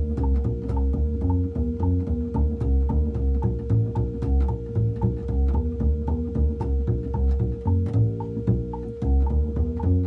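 Upright double bass played pizzicato: a steady walking line of plucked low notes, with a metronome clicking along in time and a steady held tone underneath.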